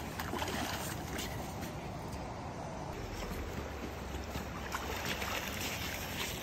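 A hooked coho salmon splashing in shallow river water as it is slid up onto the gravel bank. Steady low rumble of water and handling throughout, with a few faint knocks.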